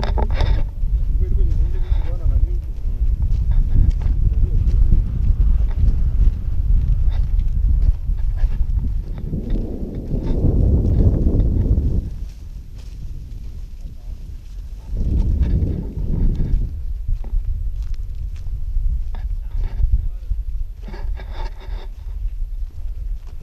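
Wind buffeting an action camera's microphone, a steady low rumble that swells louder twice, with faint voices near the start and end.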